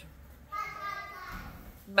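A child's voice in the background, one drawn-out call lasting about a second, fainter than the nearby speech.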